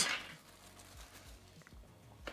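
Faint handling of small paper packaging as a palm-sized device is slid out, with a few light ticks, over quiet room tone.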